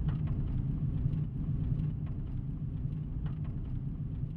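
Steady low rumble of a moving vehicle's engine and road noise, with a few faint clicks.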